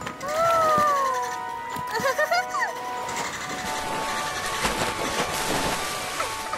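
Cartoon background music, with a long drawn-out 'ooh' glide from a voice at the start. A few quick chirping whistles follow about two seconds in, then a rising hiss of rushing noise.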